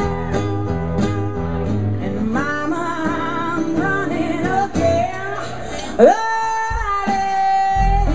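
Live acoustic blues: a woman singing with vibrato over two acoustic guitars. About six seconds in her voice swoops up into a loud, long held note.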